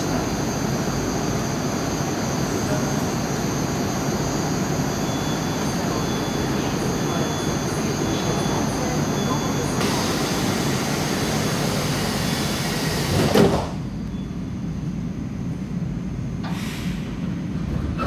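Metro station platform noise with a steady hum from the waiting 81-760/761 'Oka' train. About 13 seconds in, the train's sliding doors shut with a knock, and the platform noise drops sharply as the car is closed off. A short hiss follows a few seconds later.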